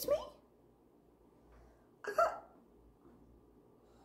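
A woman's voice finishes the word 'me?' at the start. About two seconds in comes a single short hiccup-like vocal sound, sharp at the onset and briefly pitched; otherwise there is only quiet room tone.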